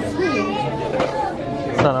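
Voices of people talking in a busy shop, several overlapping, with a short word spoken close up near the end.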